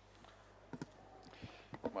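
A few sharp clicks and knocks from a table microphone being handled and adjusted, in two small clusters, the second just before a man starts speaking at the very end.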